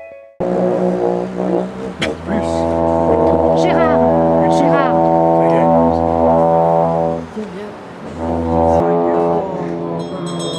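A pair of dungchen, long Bhutanese ritual horns, blowing a deep steady drone with wavering higher tones above it. The horns break off about seven seconds in and start again a second later.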